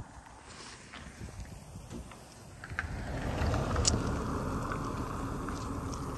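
A car driving along a street, its tyre and engine noise swelling about halfway through and then holding steady.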